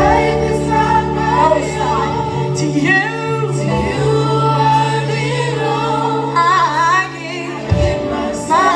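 A small church praise team singing a slow gospel worship song together into microphones, over sustained keyboard chords with long held bass notes.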